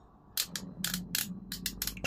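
Small metal U-shaped selector pins in a knitting machine's punch card reader clicking and rattling as they are pushed over by hand, a quick irregular run of sharp clicks starting about a third of a second in, over a faint low hum.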